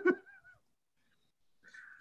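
A man's brief stifled laugh, a short high-pitched wavering squeak, then near silence until a faint squeaky breath near the end.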